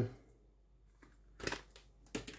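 Faint handling noise while spices are added to a steel bowl: a short cluster of clicks and rustles about one and a half seconds in, then a single small click.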